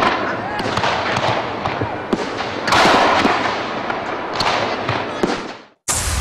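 Aerial fireworks bursting and crackling: three big bursts with many small pops between them, fading out just before the end.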